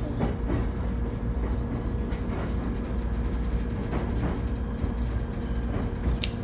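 Cabin of a Shinano Railway electric train running along the line: a steady low rumble of wheels on track under a constant electrical hum, with a few faint clicks at irregular moments.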